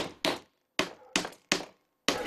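A hand tool striking cowhide stretched on a wooden workbench as the hide is worked into a drumhead: five sharp, short knocks in about a second and a half, irregularly spaced.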